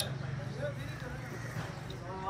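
Street-side background: faint voices over a low, steady hum that fades out near the end, with a single sharp click at the very start.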